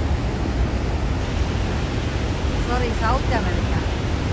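Niagara's Horseshoe Falls heard from close by: a steady, dense rush of falling water and churning spray, with no let-up.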